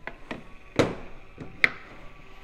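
A few short knocks and clicks of linear actuators being handled and set down on a table, the loudest about a second in and another near the end.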